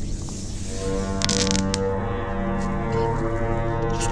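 Background music of long, steady low tones held together like a drone chord, entering about a second in. A hiss fades out at the very start, and a few sharp crackles come just after the music begins.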